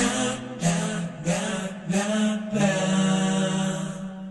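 An anime idol pop song in a lowered 'male version', with long held sung notes over a sustained backing and no drums.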